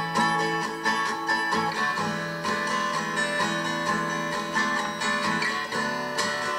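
Demo recording of a song's chorus playing back: guitar strummed and picked in a light, bright chorus, with no vocals.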